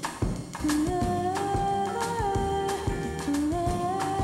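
Programme theme music: a steady drum beat with a held melody line that enters just under a second in and steps between a few long notes.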